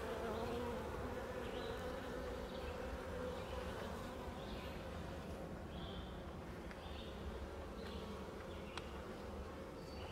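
Many honeybees buzzing steadily over an open hive, a continuous hum that eases slightly over the seconds.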